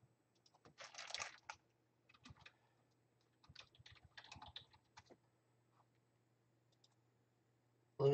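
Faint clicking and tapping in a few short bursts, with near silence between them.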